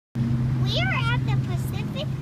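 A young child speaking in a high voice, starting just under a second in, over a steady low hum.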